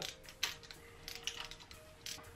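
Ratchet and socket clicking as the camshaft bearing-cap bolts on an engine cylinder head are loosened a little at a time: one sharp click about half a second in, then a few lighter clicks.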